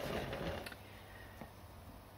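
Faint handling noise from a board being turned on a banding wheel, fading after about half a second to a quiet room with a few light ticks.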